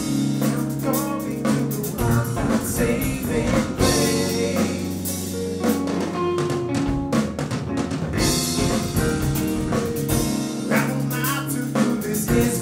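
Live band playing: a drum kit, electric guitar, bass guitar and keyboards, with long held bass notes under busy drumming. The sound is a soundboard mix matrixed with room microphones.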